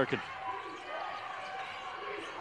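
Basketball being dribbled on a hardwood court under a steady murmur of gym crowd noise.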